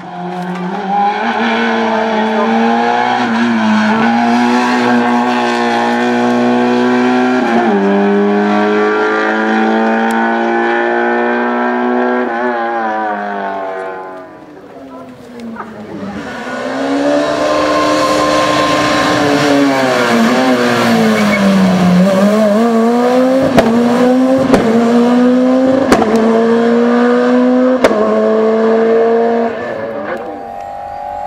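Two rally cars racing past in turn, engines at high revs. The first climbs through several gearshifts. After a short lull about halfway, a second car, a Peugeot 207 rally car, comes through: its revs drop as it brakes and downshifts, then climb again, with a few sharp cracks near the end.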